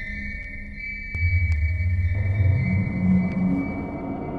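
Electronic soundtrack music with sustained high ping-like tones and a few sharp ticks. A deep bass drone enters about a second in and rises in pitch.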